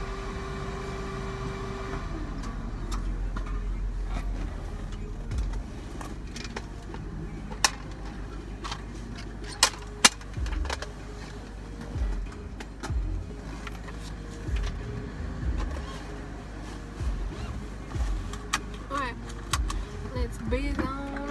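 Rummaging about inside a car: a few sharp clicks and scattered soft thumps and rustles as things are handled and moved, over a low steady hum. A steady tone stops about two seconds in.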